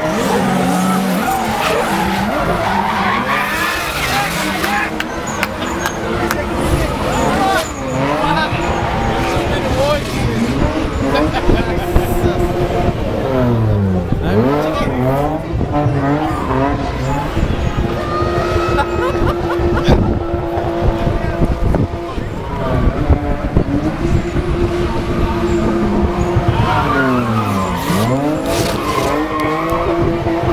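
Two drift cars, a Nissan 200SX and a BMW, sliding in tandem with their tyres squealing and skidding. Both engines rev hard, with the pitch repeatedly swooping down and back up. The revs are held steady and high for a few seconds at a time through the long slides.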